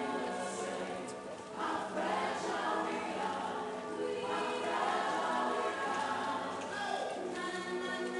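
A street choir singing in harmony, several voices holding long chords, with a short break about a second and a half in before the next phrase begins.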